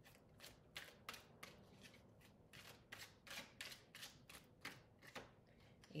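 A tarot deck being shuffled by hand, the cards slapping softly together about three times a second.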